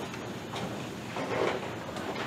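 Clip-on lapel microphone being handled and adjusted on a shirt and tie: rustling and rubbing of fingers and cloth against the mic, with a few small knocks about a second and a half in.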